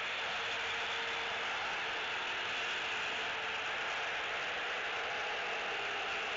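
Steady outdoor background noise: an even, high-pitched hiss with no distinct calls or events.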